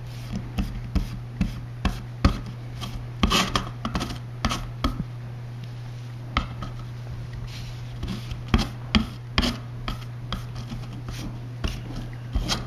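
Sponge brush dabbing and stroking iron-particle surfacer onto a metal fan grill: irregular soft taps and scrapes, sometimes several in quick succession, sometimes spaced out. A steady low hum runs underneath.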